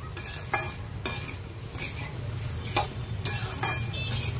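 A metal spatula stirs and tosses puffed rice with peanuts in a metal pan: a dry rustle of the grains, broken by several sharp scrapes of the spatula against the pan.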